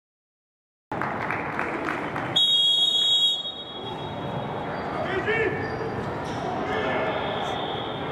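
Players' voices and calls echoing in a large indoor sports hall, starting about a second in. A loud, high, steady signal tone sounds for about a second, and a rising shouted call follows a couple of seconds later.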